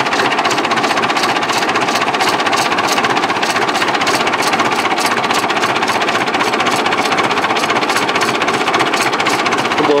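Massey Ferguson 165 tractor's diesel engine running at idle close up, a steady, rapid, even knocking.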